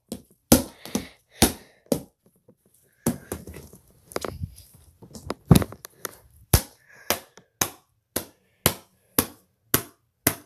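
A plastic DVD case being struck over and over as it is smashed: sharp knocks, about two a second, with a burst of crackling and crunching about three to five seconds in.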